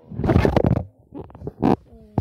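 Handling noise on a phone's microphone: a loud rumbling rub as the phone is gripped and moved, then a few short knocks.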